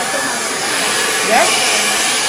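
Handheld hair dryer blowing steadily, an even hiss of air during blow-dry styling.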